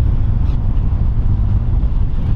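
Wind buffeting the microphone: a loud, steady low rumble with no distinct events.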